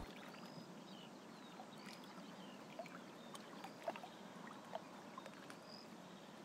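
Faint water lapping and trickling around a small boat being poled through reeds, with scattered small clicks and drips.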